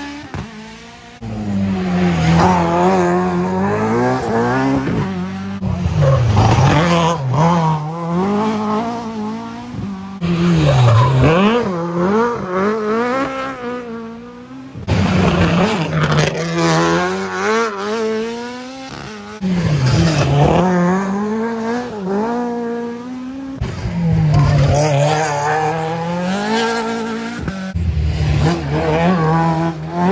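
Ford Escort Mk2 rally cars taken hard through a tight junction one after another. Each engine note drops on braking and climbs again as the car powers out, with tyres squealing as the cars slide. The sound breaks off sharply several times where one car's pass gives way to the next.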